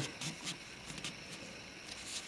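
Faint handling noise: a few soft taps and rubs from fingers on the clear plastic capsule of a silver coin sitting in its presentation case.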